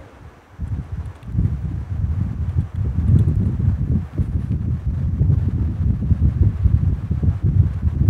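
Low, uneven rumbling noise on the microphone, setting in about a second in after a brief lull.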